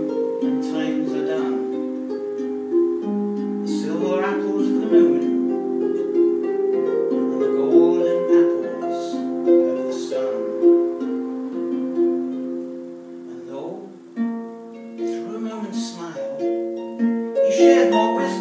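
Concert harp played solo: a slow melody of plucked notes ringing into one another, with a brief lull about three-quarters of the way through before the playing picks up again.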